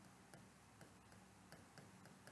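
Faint, irregular ticks of a stylus tapping on an interactive display board as a word is written, over near-silent room tone.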